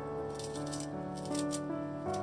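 Gentle piano background music, with two short spells of crisp rustling as a bunch of wet mizuna greens is lifted and handled.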